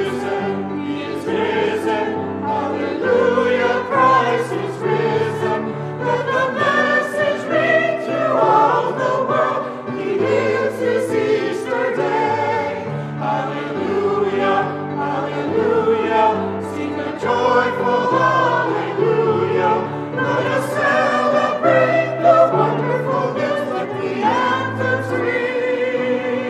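Mixed church choir of men's and women's voices singing in parts, with low notes held beneath the voices.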